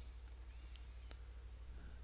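Quiet room tone with a steady low electrical hum from the recording setup, a single faint computer-mouse click about halfway through, and a faint short chirp just before it.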